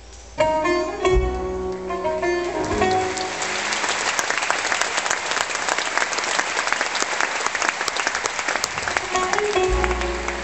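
An oud and jazz band play a short phrase of plucked notes with low bass hits. The audience then applauds for about six seconds, and the band comes back in near the end.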